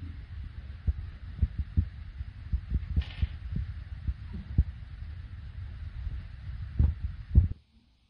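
Irregular low thumps and rumble of handling noise on a handheld camera's microphone, over a faint steady hiss. It stops abruptly about seven and a half seconds in.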